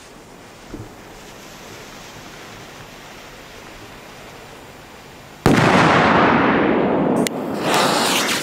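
Low outdoor background for about five seconds, then a handheld gas jet torch comes on with a sudden loud, steady hiss for nearly two seconds. It cuts off abruptly with a click and hisses again briefly near the end, as it is used to light a firecracker fuse.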